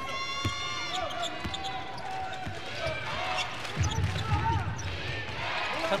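Arena sound during live basketball play: a ball dribbling on the hardwood court under crowd noise. A steady pitched tone lasts about a second at the start, and a louder stretch of low thumping comes about four seconds in.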